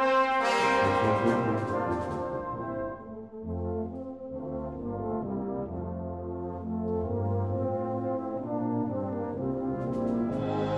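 A brass band playing slow, held chords: a full, bright chord in the first two seconds, then a softer passage of sustained chords over low bass notes.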